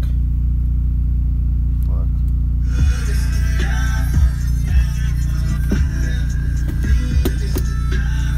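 Steady low drone of the R53 Mini Cooper S's idling engine heard inside the cabin, then music with heavy bass beats starts from the car stereo about three seconds in.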